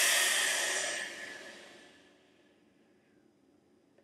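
A woman's long, hissing exhale, the 'sss' lung sound of the Taoist Six Healing Sounds, loud at first and fading out over about two and a half seconds.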